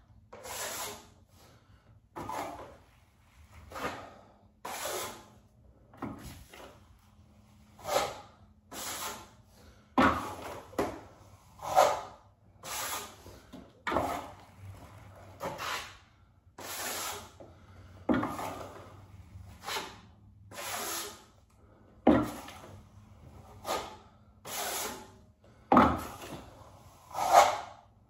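Steel trowel scraping across a wall, about one stroke a second, as joint compound is skim-coated over textured drywall to flatten it. A few strokes begin with a sharper knock.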